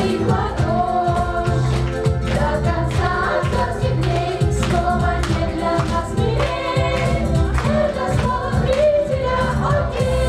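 A group of girls and women singing together into microphones over accompanying music with a steady beat.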